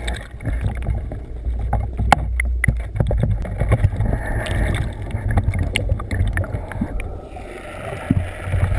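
Water movement as heard by a camera held underwater: a steady low muffled rumble and sloshing, broken by many sharp clicks and knocks.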